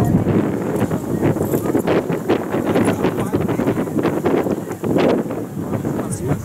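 Avro Lancaster bomber's four Rolls-Royce Merlin V12 piston engines droning steadily as it flies past overhead, with wind buffeting the microphone.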